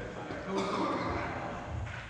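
Hockey players' indistinct shouts carrying across a large indoor ice rink, loudest about half a second in, with a scraping hiss of skates on ice and a sharp click near the end.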